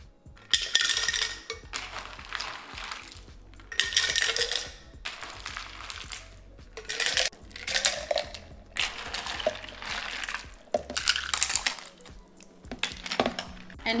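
Ice cubes clinking and clattering against glass as iced peach drink is ladled with a metal ladle from a glass bowl into a glass mason jar, in several separate scoops and pours.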